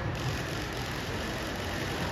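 Steady background din of a large convention hall: an even, low rumbling hiss with no clear single source.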